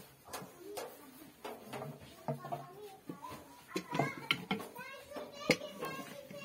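Indistinct talking, a child's voice among it, with scattered sharp clicks and taps, the loudest about five and a half seconds in.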